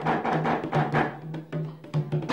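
Two rope-tuned hand drums played with bare hands in a quick, dense pattern of strikes, with a low note sounding steadily beneath them.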